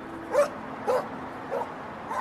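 A dog barking three times, short yelping barks about half a second apart, over a faint steady hum.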